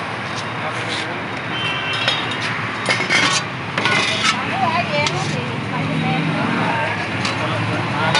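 Steady roadside traffic noise, with stainless-steel vessel lids clinking and scraping as they are lifted and set down about three to four seconds in.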